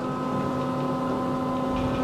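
Otis Series 5 elevator running, heard from inside the cab as a steady hum with several fixed pitched tones over a low rumble, which swells near the end.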